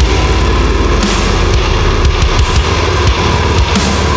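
Heavy deathcore band track playing loud: a dense wall of distorted band sound over rapid low drumming.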